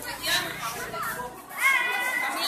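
Young people's voices talking and calling out in a group, one voice rising louder and higher about one and a half seconds in.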